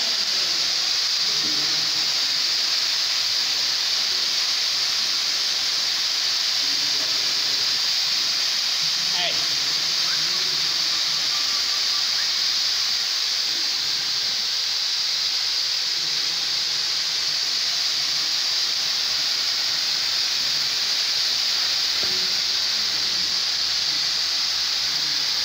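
Several CO2 fire extinguishers discharging at once, a loud, steady hiss of escaping carbon dioxide as the cylinders are emptied.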